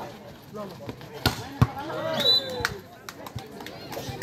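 A volleyball being struck in a spike and hitting the dirt court: a couple of sharp smacks a little over a second in, followed by short shouts from players and onlookers.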